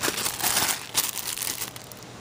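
Rustling and crinkling as a drawstring bag and a plastic package are handled right at the microphone, an irregular run of scrapes that dies down near the end.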